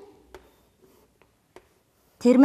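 Chalk writing on a blackboard: a few faint taps and scratches as the symbols are drawn.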